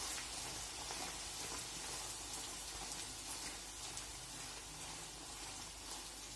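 A bhatura deep-frying in hot oil in a steel pot: a steady sizzle with fine crackling from the oil bubbling around the puffed dough, easing slightly toward the end.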